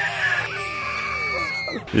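Comic meme sound effect: one long, high, crowing cry, held and then bending down and cutting off sharply near the end.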